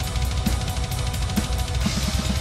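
Metal drum kit playing a very fast blast beat: rapid, even bass-drum strokes under snare and cymbals.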